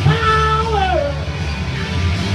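Rock song played on electric guitar with a man singing a held high note that slides down about a second in, over a steady heavy low end.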